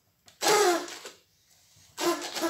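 A paper party blower blown once, a short buzzy squawk whose pitch falls slightly, starting about half a second in and dying away within a second.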